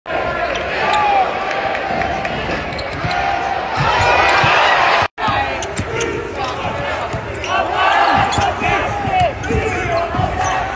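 Basketballs bouncing on a hardwood arena court, with players' voices echoing in the hall. The sound drops out for a moment about five seconds in.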